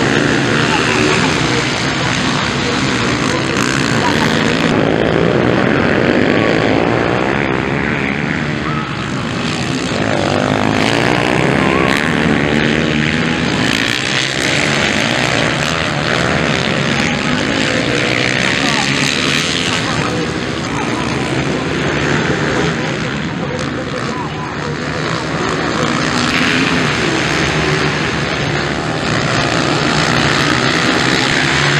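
Several dirt bike engines racing, revving up and down in repeated waves as the bikes accelerate and pass.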